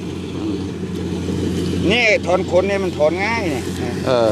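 A motor engine running with a steady low drone, with a man's voice talking over it in the second half.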